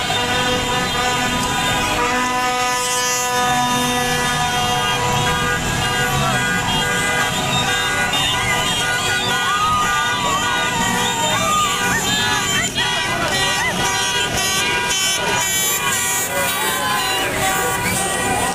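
Many car horns sounding together in long steady blasts of several pitches. From about halfway through, a street crowd's shouting and cheering voices take over.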